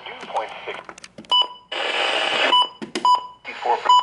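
Midland weather alert radio beeping short single-pitch key tones as its buttons are pressed, four times. A burst of static hiss from the radio sits between the first two beeps, a sign of the bad weather-band signal.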